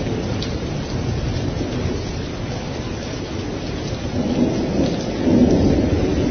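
Thunderstorm recording: steady rain with low rolling thunder that swells louder about five seconds in.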